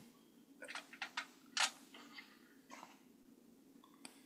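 A few faint, short clicks or taps in the first half, the last and sharpest about a second and a half in, then a quiet room.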